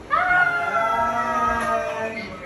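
A long, high-pitched excited scream that starts suddenly, rises at first, then slides slowly down for about two seconds, with a lower voice joining partway through.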